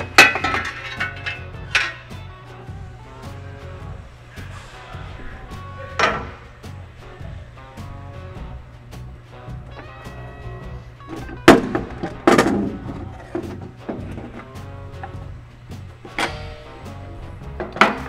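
Background music over a series of sharp knocks and clunks as the infeed tray and guard are unfastened and lifted off an edgebander; the loudest are a pair of clunks about twelve seconds in.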